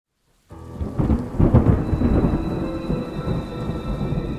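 Thunder rumbling and crackling over falling rain, starting suddenly about half a second in and loudest in the first couple of seconds.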